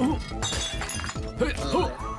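A cartoon flower pot falls and smashes on the floor: one sharp shattering crash about half a second in, over background music.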